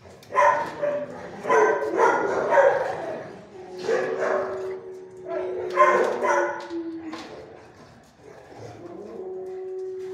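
Dogs barking repeatedly in a shelter kennel block, a series of loud barks over the first several seconds. A steady hum comes in near the end.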